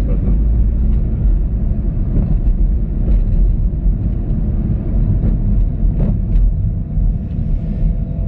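Car being driven, a steady low rumble of engine and road noise heard from inside the cabin.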